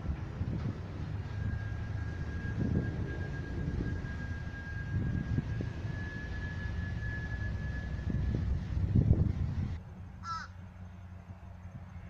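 A low, uneven rumble with a faint steady high whistle-like tone over it. About ten seconds in, the sound drops off at a cut and a crow gives a single short caw.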